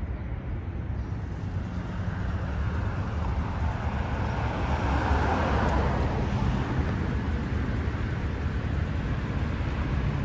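Steady street traffic rumble, swelling as a vehicle passes about halfway through and then easing off.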